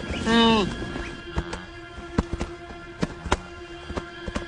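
A wildebeest calf gives one short call about a quarter of a second in, falling in pitch at the end. Scattered hoof clicks follow over the next few seconds, over background music with a steady low drone.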